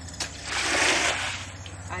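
Standing rainwater on a flat concrete roof slab being pushed along with a long-handled squeegee: one swishing, splashing stroke that swells and fades, lasting just under a second.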